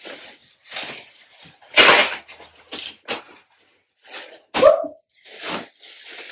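Plastic packaging rustling in a series of short bursts as a garment in a clear plastic bag is pulled out and handled. The loudest burst comes about two seconds in.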